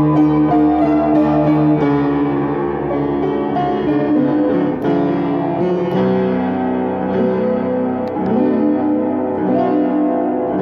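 Upright piano played with both hands: sustained chords with moving notes over them, the lower notes changing to a new chord about six seconds in.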